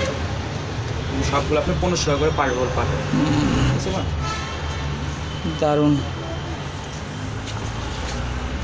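A steady low traffic rumble with people talking in the background.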